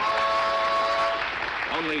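Studio audience applauding a correct answer, with a steady held tone sounding over the applause for about the first second.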